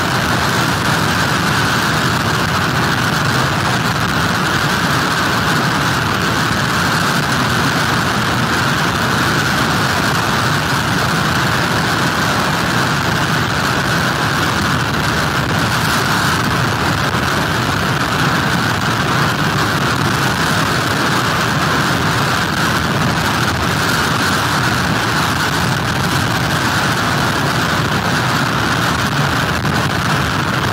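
Hurricane wind and rain on a pier webcam's microphone, mixed with breaking surf: a loud, steady rushing noise that never lets up.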